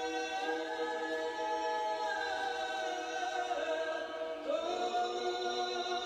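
Unaccompanied choir singing slow, sustained chords, moving to a new chord about four and a half seconds in.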